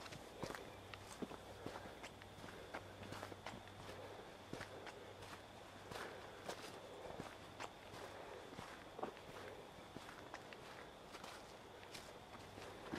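Faint footsteps at a walking pace on a dirt forest trail.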